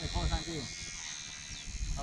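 A short, wavering voice in the first half-second over low wind rumble on the microphone, with a faint steady high whine from the electric motor of a radio-controlled model plane overhead.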